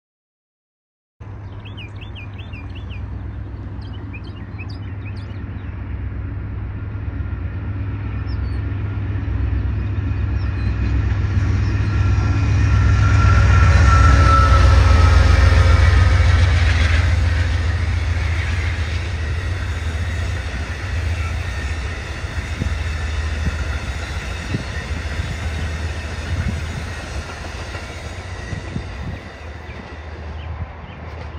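Amtrak passenger train passing behind a GE Genesis diesel locomotive: a low rumble begins suddenly a second in and builds to its loudest around the middle as the locomotive goes by. It then slowly fades as the cars roll past, with wheel clicks over rail joints in the later part.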